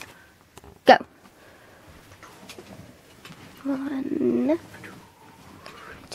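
A single sharp knock about a second in, then a voice giving one short drawn-out call a little past the middle.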